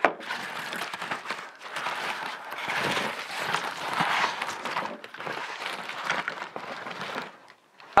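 Plastic air-column bubble wrap crinkling and rustling as it is pulled up and off a glass vase, a continuous irregular rustle that stops just before the end.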